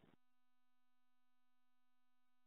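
Near silence: a gap in the conference-call line audio.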